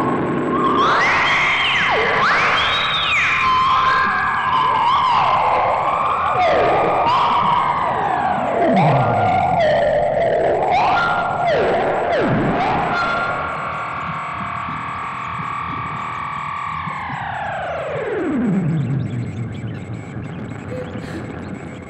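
Analog modular synthesizer tones swooping up and down in pitch in overlapping arcs, twice plunging low. Near the end a held cluster of tones falls steeply together to a low pitch.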